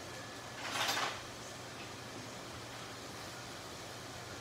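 Scallops searing in a hot nonstick pan on a gas burner, with the range hood fan running, give a steady low hiss. About a second in comes one short, louder sliding rush as another set of tongs is fetched.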